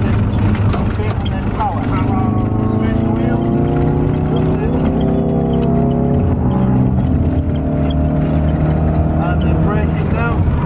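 Ford Focus RS's 2.3-litre turbocharged four-cylinder engine heard from inside the cabin under acceleration. Its pitch climbs gently for a few seconds, then holds steady at speed.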